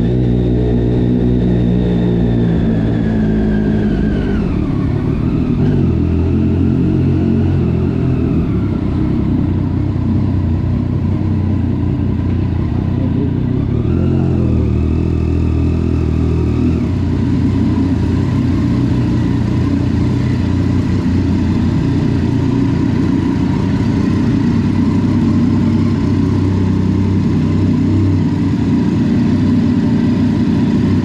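Sport motorcycle engine running at low speed. Its note drops about four seconds in, picks up briefly around the middle, then settles into a steady idle as the bike comes to a stop.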